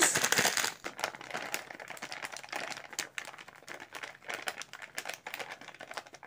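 Plastic flour packet crinkling as it is handled and tipped to pour maida into a steel bowl: a louder rustle at the start, then scattered irregular crackles.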